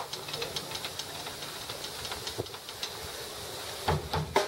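Steady hiss of outdoor background noise with scattered faint ticks, and one short thump near the end; no music playing.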